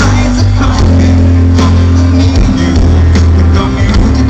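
A live pop-rock band playing loud through a concert sound system: drums, bass and electric guitar, with a male singer on a microphone.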